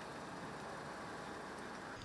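Faint, steady diesel engine noise from a heavy three-axle dump truck driving away.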